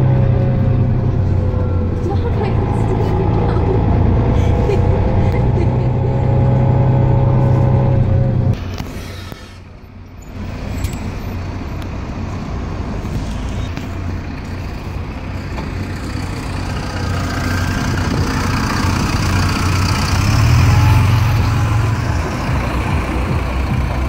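Mercedes-Benz Citaro bus's diesel engine heard from inside the saloon: a steady low drone with a fainter whine above it. About a third of the way in the sound drops away sharply; then, from outside, the bus's engine grows louder and surges as the bus pulls away from the stop near the end.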